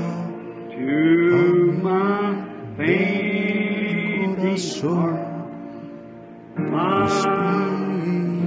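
Congregation singing a slow hymn in long, held notes, each phrase sliding up into its pitch, with a brief lull just before the last phrase.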